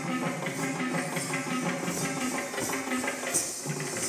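Music: pitched melody notes over a quick, steady percussion beat.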